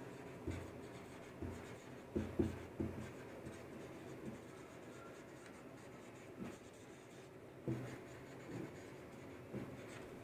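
Marker pen writing on a whiteboard: faint, irregular strokes and taps of the tip as words are written.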